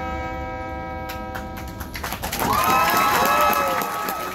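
Marching band holding a sustained chord that dies away about halfway through, followed by crowd cheering and whooping from the stands.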